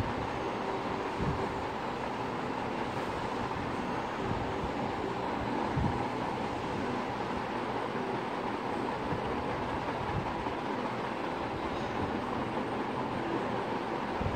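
Steady rushing background noise, with a couple of soft low thumps, one about a second in and one near six seconds in.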